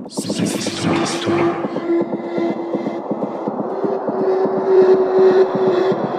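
Electronic dance music (progressive house / techno) from a DJ mix: a burst of bright noise washes in at the start and fades, then a held synth note sits over a steady fast pulse, stepping up slightly in pitch about four seconds in.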